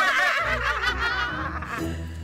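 Women laughing heartily, their laughter dying away near the end, over background music with a steady low bass.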